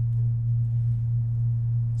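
Steady low electrical hum from the sound system, one unchanging low pitch with nothing else over it: mains hum picked up in the audio chain.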